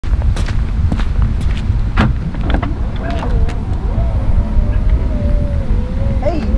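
A low, steady rumble with scattered knocks and footsteps. From about halfway a dog whines in one long, wavering high tone that rises and falls.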